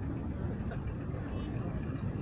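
Steady low engine rumble with faint voices in the background.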